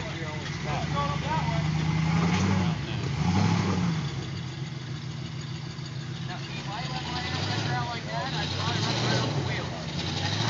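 Full-size Ford Bronco's engine running at low revs as it crawls through a rocky creek bed, with short rises in revs about two and a half and three and a half seconds in.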